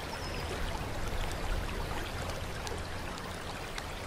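Water trickling and running steadily from a small fountain into a stone basin, with scattered light drips.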